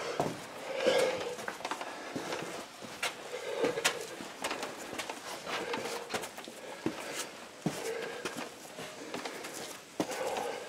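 Footsteps scuffing and knocking on rocky ground, with sharp clicks at irregular intervals and soft breaths rising every two to three seconds as people walk.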